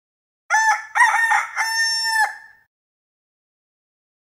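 A rooster crowing once, cock-a-doodle-doo: a few short notes followed by one long held note, about two seconds in all, with dead silence around it.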